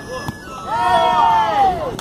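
A person's long, loud shout lasting a little over a second, its pitch rising and then falling, starting about half a second in.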